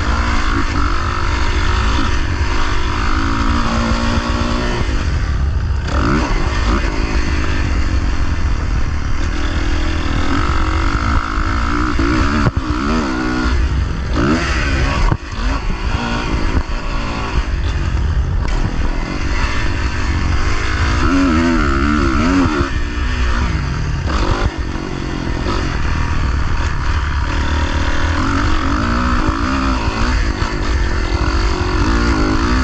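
Motocross dirt bike engine being ridden hard, its pitch rising and falling over and over as the throttle opens and closes through the track's straights and corners.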